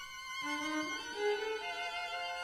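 Contemporary classical chamber ensemble playing an instrumental passage, violins prominent with sustained bowed notes. About half a second in, a new line enters and climbs upward in steps.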